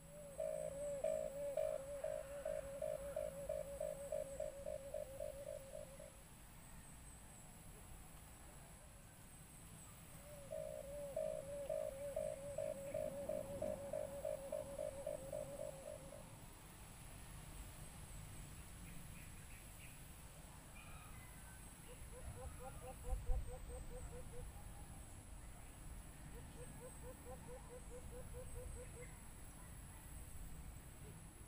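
White-eared brown dove call played from a Bluetooth speaker as a lure: a long run of quick, low hooting notes, about four a second for some five seconds, repeated identically about ten seconds later. In the second half, two fainter runs of similar notes follow, with a single low thump between them.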